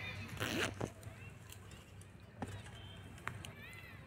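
Faint voices in the background over a low steady hum, with a short burst of hiss about half a second in and a couple of sharp clicks later on.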